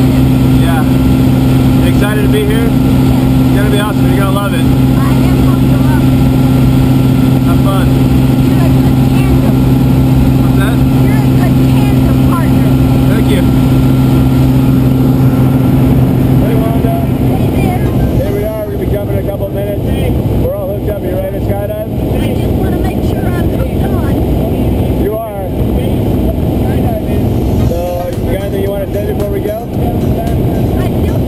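Propeller engine of a small high-wing plane droning steadily inside the cabin during the climb. About seventeen seconds in the steady hum gives way to a rougher, slightly quieter engine and wind noise with voices over it.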